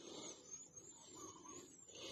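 Near silence: faint outdoor background noise with a few faint, short high-pitched chirps.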